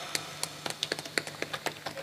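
Scattered, irregular hand claps from a few people, faint and quick, with no steady applause building.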